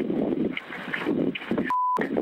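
Boosted 911 phone-call recording: muffled rustling and breathy noise from a caller moving outdoors, heard over a phone line. Near the end a short steady beep cuts in alone.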